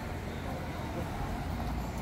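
City street traffic at a crosswalk: cars, taxis among them, driving past with a steady low rumble of engines and tyres, with faint voices of people nearby.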